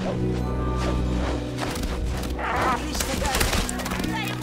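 Orchestral film score, with a hippogriff landing and running on a dirt path: a quick series of thuds from its feet in the second half, under excited shouts from onlookers.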